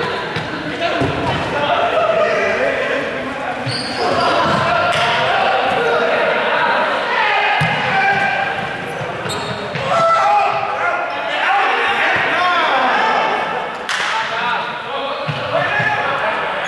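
Many young people's voices calling and shouting over one another, echoing in a large sports hall, with balls bouncing and thudding on the floor several times.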